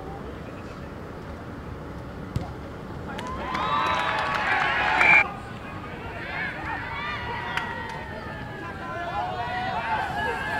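Rugby match ambience with a single sharp thud of a boot kicking the ball about two seconds in. Loud shouting and cheering follows from about three seconds in and cuts off abruptly a couple of seconds later. Scattered shouts from players on the pitch come after it.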